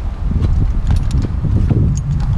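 Low, uneven rumble of wind buffeting the microphone, with a few light clicks.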